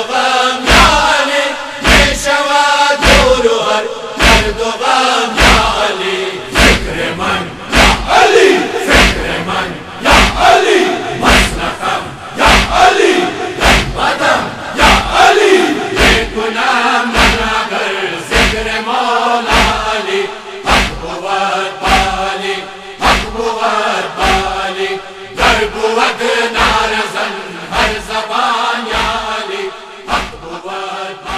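Men's chorus chanting a Shia noha with rhythmic chest-beating (matam): evenly spaced thuds of hands striking chests, a little faster than once a second, under the sung lines.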